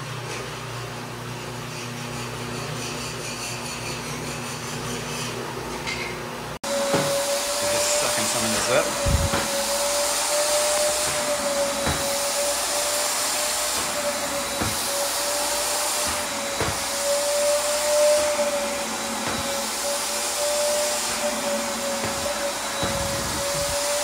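Rotary floor machine scrubbing chemical stripper into a waxed terrazzo floor, a steady low hum. About six and a half seconds in, the sound cuts to a wet vacuum sucking up the dissolved wax slurry: a louder steady whine holding one high note, with a few short knocks of the wand.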